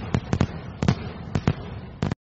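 Fireworks going off: a string of irregular sharp bangs and cracks over a low rumble, about seven in two seconds.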